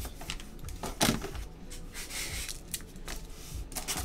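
Cardboard box being picked up and handled: a knock about a second in, then cardboard rubbing and scraping with small clicks.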